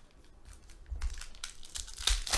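Trading cards, a clear plastic sleeve and foil pack wrappers rustling and crinkling as they are handled. It is faint at first, then comes in a run of short crackles and clicks from about a second in.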